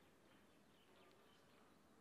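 Near silence: faint open-air ambience with a few faint, short, high chirps.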